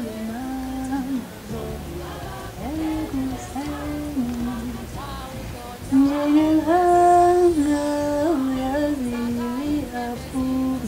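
A woman singing a lullaby, holding long notes that glide slowly between pitches; her voice grows louder about six seconds in.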